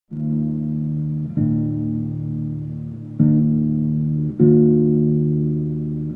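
Acoustic guitar played slowly: four chords plucked at unhurried, uneven intervals, each left to ring and fade.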